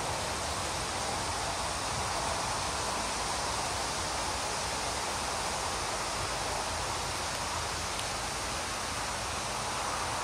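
Steady outdoor rustle of foliage in a breeze, an even hiss with no distinct events.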